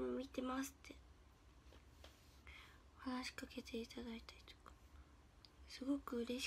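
A young woman's voice speaking softly in two short phrases, with a pause of a couple of seconds between them, over a faint steady low hum.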